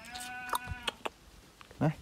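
A Shiba Inu puppy whining: one drawn-out, bleat-like cry lasting just under a second, then a brief, louder low vocal sound near the end.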